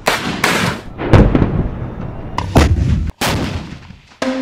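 Weapons firing in quick succession: a shoulder-fired rocket launcher and an artillery gun, about five loud, sharp blasts, each trailing off briefly.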